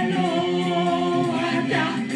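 Gospel praise song sung in the Bassa language: voices singing in harmony, holding one long note through the first half.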